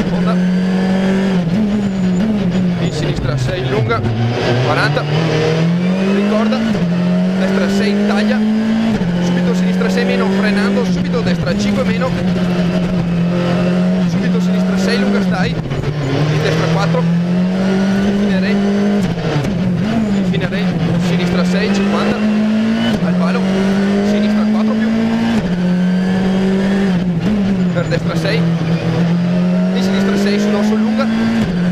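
Skoda Fabia R5 rally car's 1.6-litre turbocharged four-cylinder engine at full stage pace, heard from inside the cockpit. The revs climb and fall back sharply again and again with quick gear changes. About four seconds in, the pitch drops low as the car slows for a hairpin, then climbs again.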